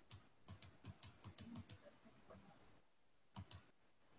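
Faint computer mouse clicks: a quick run of about ten in the first couple of seconds, then two clicks close together near the end.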